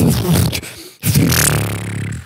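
A man imitating with his mouth the sound of a tap running dry: two long, buzzing, hissing sputters, like air spitting from a faucet with the water supply cut off.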